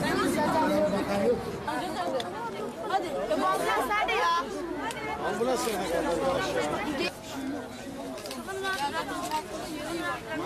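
Several people talking at once, voices overlapping as chatter.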